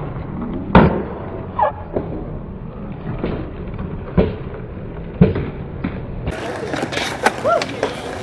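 Skateboard wheels rolling on smooth concrete with a steady rumble, broken by several sharp clacks of the board, the loudest about a second in as it comes off a ledge. About six seconds in, the sound cuts to a different recording with a voice.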